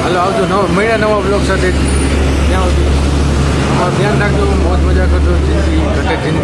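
A man talking over a steady low rumble of road traffic, the rumble dropping out briefly about four seconds in.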